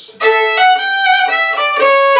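Solo fiddle playing a short bowed phrase from about a quarter second in, a quick run of stepping notes that demonstrates a double cut ornament.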